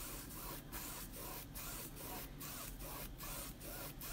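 Paintbrush scrubbing paint back and forth on canvas: a faint, scratchy hiss that breaks briefly at each change of direction, about two to three strokes a second.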